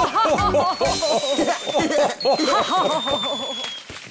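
Several cartoon voices laughing and cheering together over the closing music of a children's song, with two long, slowly falling high whistle tones. The sound fades out near the end.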